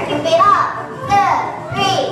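A group of children's voices calling out together, several rising-and-falling calls in quick succession, with little or no music under them.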